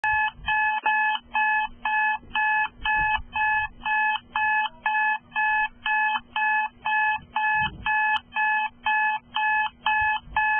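Digital alarm clock beeping in an even, repeating pattern, about two beeps a second, over a faint steady hum.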